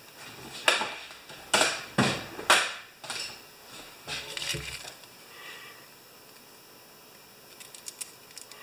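Short rustles and knocks of things being handled on a workbench: four loud ones in the first three seconds and a few softer ones about four seconds in. Near the end, scissors give small snips as they start cutting open a small plastic package.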